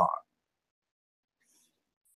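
Near silence in a pause between sentences, just after a man's word ends, with only a faint brief hiss about one and a half seconds in.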